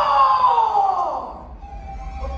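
A performer's voice on stage in one long falling cry, gliding down in pitch for about a second and a half. Near the end a steady held musical note comes in.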